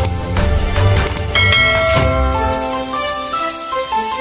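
Short outro music jingle: chiming, bell-like notes stepping in pitch over a low bass, and the bass drops away about halfway through.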